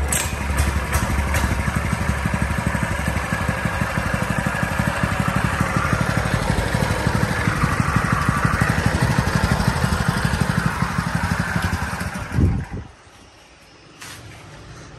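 Lifan 6.5 hp single-cylinder petrol engine (low-speed version) running steadily with a fast, even firing beat. It cuts out about twelve and a half seconds in.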